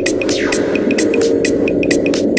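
Minimal techno: a dense, droning low synth layer with sharp, fast hi-hat-like ticks over it.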